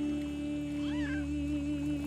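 Film score music holding one long, steady note, with a brief high rising-and-falling squeak about a second in.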